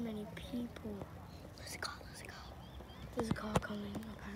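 Hushed, whispered voices close to the microphone in short snatches, with a couple of sharp clicks about three seconds in.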